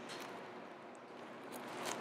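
Faint rustle of thin Bible pages being leafed through over quiet room tone.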